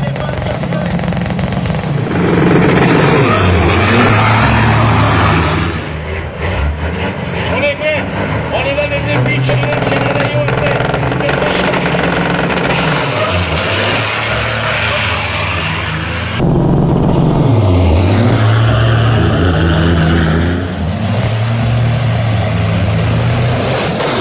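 Big-rig diesel semi-truck engines revving hard, the engine note climbing and dropping repeatedly, with two loudest full-throttle stretches, one about two seconds in and another about sixteen seconds in.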